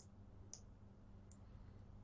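Three faint computer mouse clicks, at the start, about half a second in and past the middle, over near-silent room tone.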